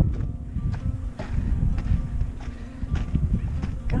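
Footsteps on a gravel footpath, an even walking rhythm of about two to three steps a second, over a steady low rumble.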